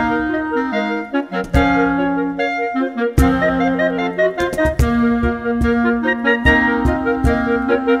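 Five clarinet parts playing a processional march in harmony, with held notes moving in chords, over a cajón struck with bare hands keeping the beat.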